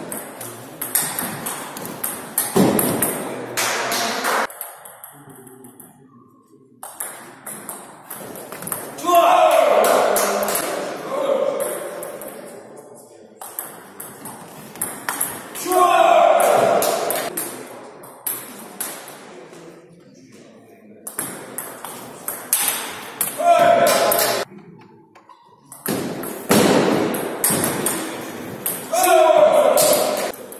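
Table tennis rallies: the celluloid ball clicks in quick runs off the rackets and the table, with short breaks between points. Voices call out a few times, loudest of all, between the rallies.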